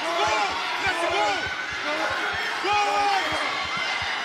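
Repeated dull thuds of ground-and-pound punches landing on a fighter pinned against the cage, under shouting voices.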